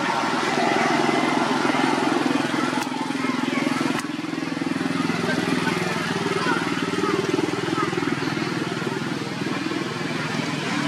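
A steady motor drone, like a running engine, under faint indistinct voices, with two small clicks about three and four seconds in.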